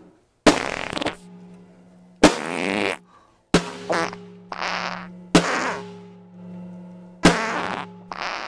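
A snare drum struck with a stick about six times, every hit coming out as a fart noise lasting about half a second to a second.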